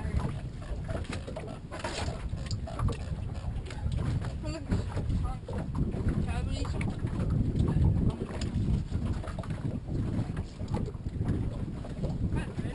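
Wind buffeting the microphone on an open boat, a steady low rumble, with scattered small knocks and faint voices in the background.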